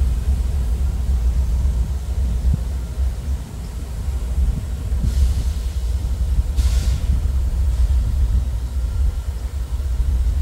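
Diesel-electric locomotives of a Norfolk Southern stack train creeping at very slow speed while coming to a stop, giving a steady low rumble. Two brief hisses stand out, about five and about seven seconds in.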